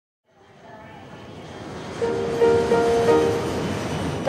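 City traffic ambience mixed with music, fading in from silence and growing steadily louder. A steady held tone enters about halfway through.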